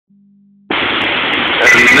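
Loud, steady rush of floodwater pouring through the Oahe Dam spillway and churning in the outflow, heard through a phone microphone. It starts abruptly about two-thirds of a second in.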